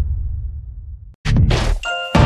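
Channel intro sting: a deep bass hit fades away over the first second, then after a brief silent gap a sharp hit and a ringing metallic clang come in near the end.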